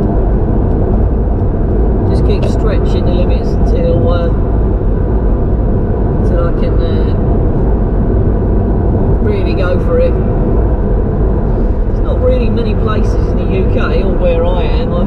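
Steady low road and engine rumble inside the cabin of a Honda Integra Type R on the move, with a man's voice heard briefly now and then under it.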